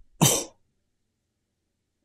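A man's single short, breathy cough-like burst of breath, about a quarter second in.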